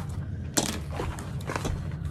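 Vinyl, fabric and paper pattern pieces being handled and laid out on a cutting mat: soft rustling with a few sharp crinkles or taps, the loudest about half a second in, over a steady low hum.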